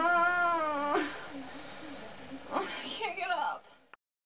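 A person's drawn-out wail, about a second long, rising then falling in pitch, followed near the end by a few shorter cries that fall in pitch.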